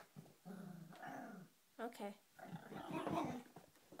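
A Shorkie (Shih Tzu–Yorkie mix) growling: a low growl about a second long, then a rougher spell of growling about two and a half seconds in. She growls in displeasure at being approached to be petted after her bath.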